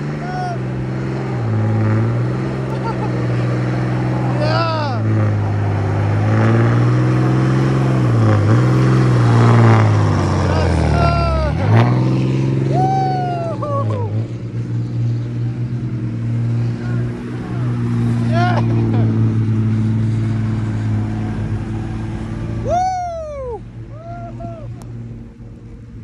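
Heavy-duty pickup truck engines running under load as they tow a line of vehicles through snow: a low, steady drone that wavers and dips in pitch midway. People whoop and cheer several times over it.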